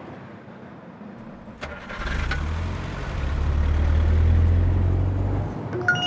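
A click, then a car engine starting and running, its low rumble swelling for a few seconds before stopping abruptly near the end.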